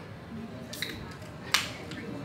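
Low murmur of voices in a room, with a soft hiss just under a second in and a single sharp click about one and a half seconds in.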